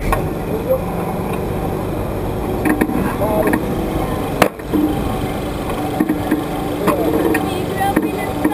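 Steady low rumble of a bungee-ball ride setting off, starting suddenly, with a few sharp knocks from the ride and short laughs and voices from the riders strapped into the ball.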